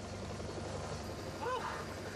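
Helicopter hovering, its engine and rotor making a steady low drone, with a brief voice near the end.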